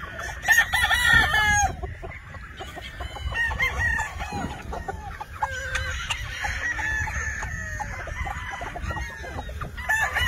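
A flock of Pumpkin hatch gamefowl, roosters and hens: a rooster crows loudly about half a second in, and the birds keep clucking and calling for the rest of the time, with another crow starting right at the end.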